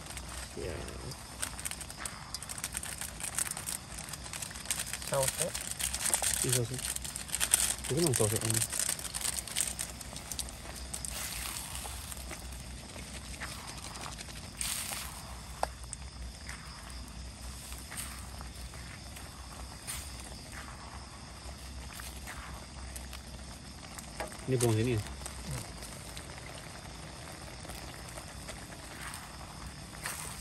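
Instant noodles, sausages and chicken cooking in a steel wok on a portable gas stove: a steady sizzle and bubble, with a silicone spatula stirring and scraping in the pan. The stirring is busiest and loudest in the first ten seconds.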